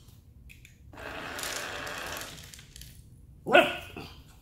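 A puppy gives one sharp bark about three and a half seconds in, the loudest sound here. Before it comes a scraping, rattling noise lasting about a second and a half.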